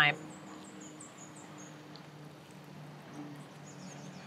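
Quiet outdoor ambience with a small bird's high, thin chirps: a quick run of about seven short notes in the first two seconds and a few more near the end, over a faint steady hum.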